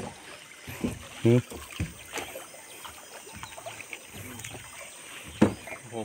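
River water washing against the hull of a wooden ferry boat as it crosses, with a few light knocks of wood and one sharper knock near the end as the boat reaches the bank.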